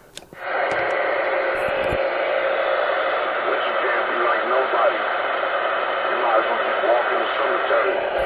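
A Ranger radio's speaker carrying a transmission on 27.185 MHz (CB channel 19): steady static hiss with a faint, garbled voice under it. It comes on about a third of a second in.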